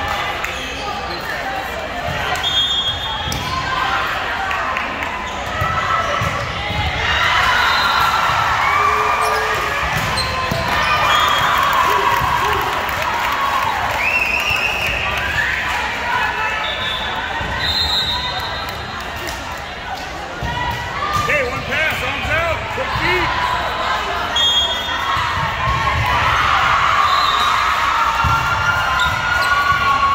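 Busy indoor volleyball gym: volleyballs being struck and bouncing on the hardwood court, with players' voices echoing around the hall. Brief high-pitched squeaks cut through now and then.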